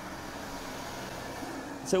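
A steady low hum of background noise, with a man's voice starting at the very end.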